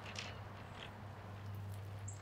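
Faint, soft squishing of gloved hands working butter under the skin of a raw chicken, over a steady low hum.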